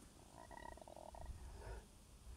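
Near silence with a faint, rapidly pulsed animal call starting about half a second in and lasting under a second, followed by a weaker trace near the end.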